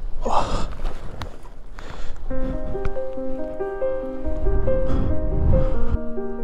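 Wind rumbling on the microphone, with a short gust at the start, then background music of sustained keyboard notes fading in about two seconds in.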